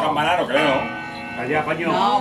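Music from a television advertisement playing under excited shouting voices, where the broadcast's midnight chimes have been replaced by the advert.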